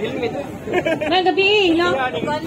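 Speech: a woman talking into a handheld microphone, starting about two-thirds of a second in, over crowd chatter.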